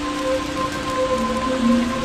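Steady rain-like hiss of water spraying from a fire engine's water cannons onto a fire, with steady held tones underneath.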